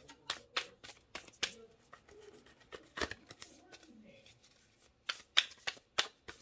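A deck of oracle cards being shuffled by hand, the cards slapping together in sharp clicks. The clicks come in quick runs at the start and near the end, with only a stray one in between.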